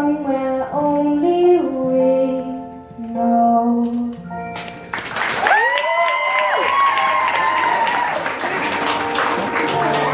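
The closing notes of a girl's sung cover over its backing track, then, about five seconds in, an audience breaks into applause with cheering.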